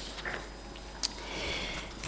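A quiet pause with a single faint click about halfway, then a short breath in through the nose close to the table microphone.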